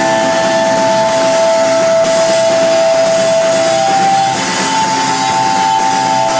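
Live funk band playing a groove on drum kit and electric bass, with steady cymbal strokes and long held notes in the mid range that last several seconds.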